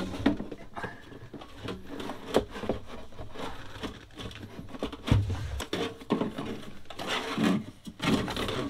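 Handling noise as a diesel air heater unit is worked loose and lifted out of its wooden compartment: irregular knocks, scrapes and rubbing of the housing against the plywood, with a dull thump a little past halfway.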